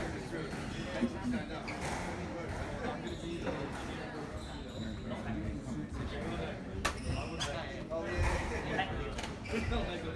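Squash rally: the ball cracks off rackets and walls at irregular intervals, with footsteps on the wooden court floor, in an echoing court. Voices carry on underneath.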